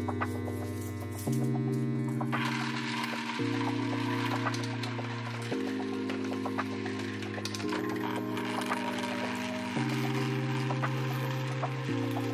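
Background music with slow chords changing about every two seconds. About two seconds in, a laser-cut plywood vibration coin sorter starts running: a steady rattle with scattered clicks as coins slide down its ramp and drop into the wooden bins.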